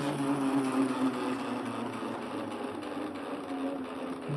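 A homemade generator's motor-driven rotor whirring with a low steady hum that slowly fades, just as its input battery is taken out.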